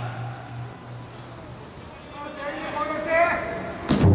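Crickets chirping in one steady high trill. In the second half a voice calls out with a drawn-out, wavering call.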